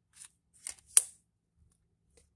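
Tarot cards sliding against each other as the front card is drawn off a hand-held deck: a couple of short soft scrapes, then one sharp snap of card stock about a second in.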